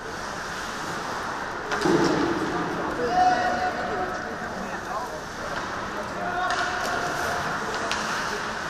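Live ice hockey play on an indoor rink: a steady wash of skates on the ice, a few sharp clacks of sticks and puck, and voices calling out, loudest around two to three seconds in.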